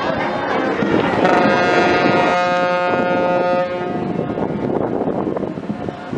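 A ship's horn sounds one steady blast about two and a half seconds long, starting a little over a second in.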